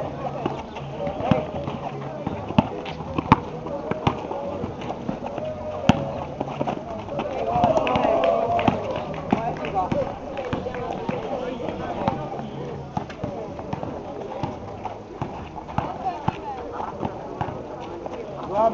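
A basketball dribbled on an asphalt court, giving sharp, irregularly spaced bounces, over players' voices.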